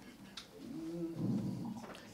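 A man's low, drawn-out vocal hesitation into a handheld microphone, lasting just over a second, before he begins to speak; a faint click comes just before it.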